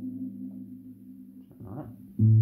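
Guitar chord played through a modelling processor, fading as its low notes ring on, with a brief scraping noise near the end.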